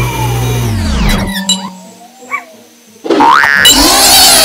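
Cartoon sound effects. A falling glide dies away in the first second and a half, and a faint short warble follows near the middle. About three seconds in, a sudden loud rising sweep breaks out into a burst of noise.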